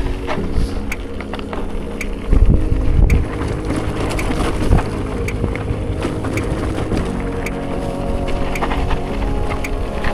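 Gravel bike descending a steep, rocky dirt trail: wind buffets the handlebar-mounted camera's microphone while the bike rattles and clicks over rocks, with a heavy jolt about two and a half seconds in.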